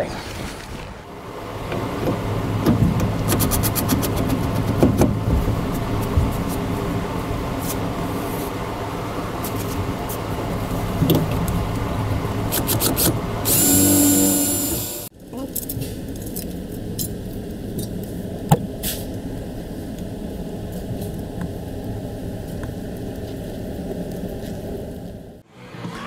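A cordless drill-driver whines steadily for about a second and a half as it drives a screw into a truck's rear speaker enclosure. Around it is a steady low hum with scattered clicks and knocks from handling, which changes suddenly to a thinner steady drone just after the drill stops.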